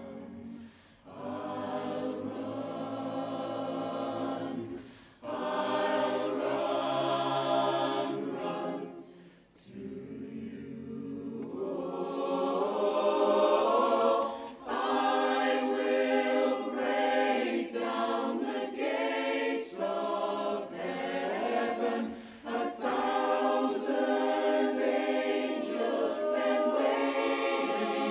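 Mixed barbershop chorus singing a cappella in close harmony. The first ten seconds come in short phrases with brief breaks, then the singing turns louder and more continuous, with the lowest voices dropping out.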